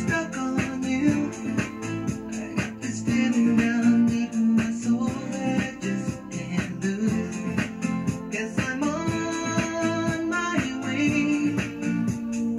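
Dance-workout music playing with a steady beat, plucked guitar and held keyboard notes, with little or no singing.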